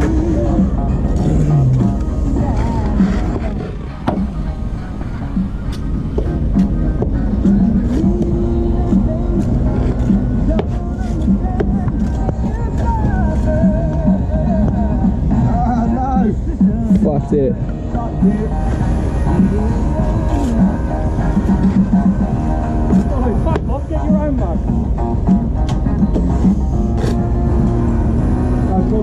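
Pop music with singing from a site radio, with occasional sharp clicks of trowels and bricks.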